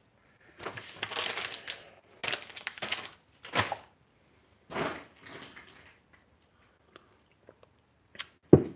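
Rustling and crinkling of something being handled, in several bursts of about a second each, the sharpest about three and a half seconds in, with a few faint clicks near the end.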